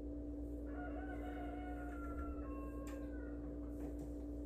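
One long pitched call lasting about two and a half seconds, wavering slightly in pitch, heard faintly over a steady hum.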